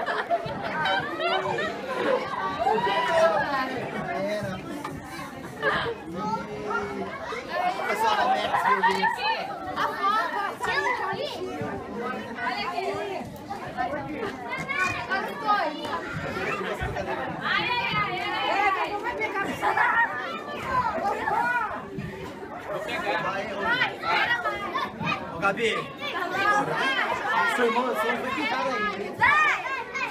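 Crowd chatter: many adults and children talking and calling out at once in a large room, without a pause.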